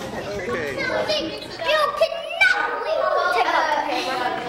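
A group of young children talking and calling out over one another, high voices overlapping without a break.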